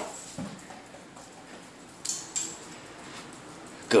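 Small dog fetching a thrown ball across a wooden floor. Mostly quiet, with two short sounds close together about halfway through.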